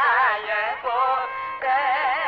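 Carnatic classical music in raga Janjhuti: a melody line sliding through rapid oscillating gamakas over a steady drone, with short breaks between phrases.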